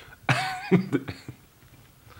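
A man's short, throaty vocal outburst: one sharp burst, then a few quick breathy ones that fade out within about a second and a half.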